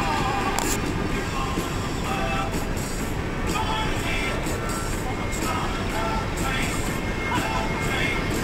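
Music playing, with short held tones that change every second or so, over a steady low rumble.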